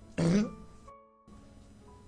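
A man's short throat-clearing cough near the start, over faint background music of soft held notes.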